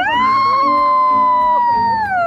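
A young man's long, high-pitched squeal of delight. It rises sharply at the start, holds for about two seconds and slides down at the end, while a second, lower voice joins briefly in the middle.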